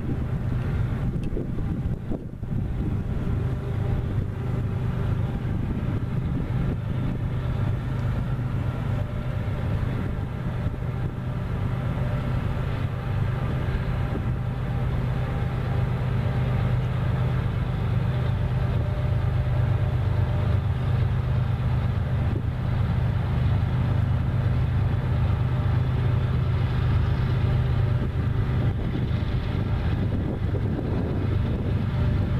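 Diesel locomotives of a loaded coal train running with a steady low engine hum as the train approaches slowly, growing a little louder past the halfway point. Wind noise on the microphone.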